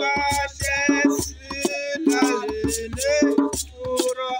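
Group of voices singing a song in short phrases, accompanied by drums and a rattle keeping a steady beat.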